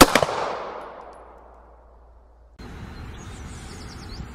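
A quick burst of gunshots, a few strikes close together, then a long echoing tail that dies away over about two and a half seconds. It cuts suddenly to steady outdoor background noise with faint bird chirps.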